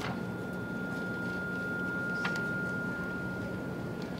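A steady high-pitched electrical whine over a low hum, with a couple of faint ticks from a marker writing on a whiteboard.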